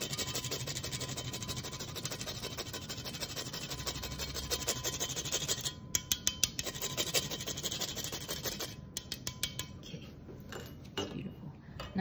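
Tonka bean being grated on a fine stainless-steel rasp grater: fast, repeated scraping strokes, breaking off briefly about six seconds in and thinning out to a few quieter strokes near the end.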